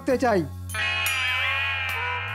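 Background score of an animated comedy: a held chord over a low drone, with one high note wavering up and down. A short spoken phrase opens it.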